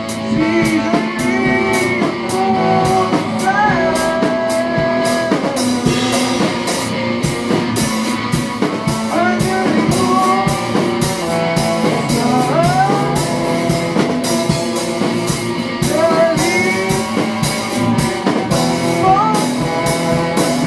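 Rock band jamming in a loose psychedelic style: drum kit with frequent cymbal strokes, guitar, and a lead melody that keeps sliding and bending in pitch.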